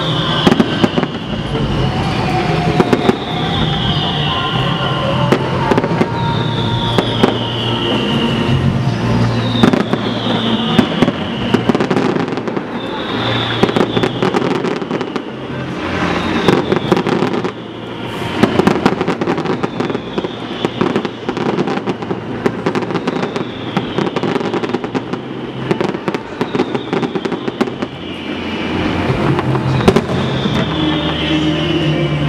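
A fireworks display: a dense run of bangs and crackling shell bursts. A high falling tone repeats every two seconds or so.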